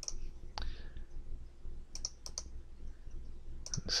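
Computer mouse clicking: a scattering of sharp clicks, several in quick pairs, over a faint low hum.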